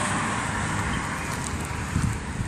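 A car passing on the road, its tyre and engine noise slowly fading away, over a low rumble of wind on the microphone.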